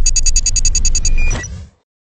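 Logo-sting sound effect: a quick run of about a dozen bright, high-pitched ticks, roughly ten a second, over a low rumble, ending in a short high tone and fading out about a second and a half in.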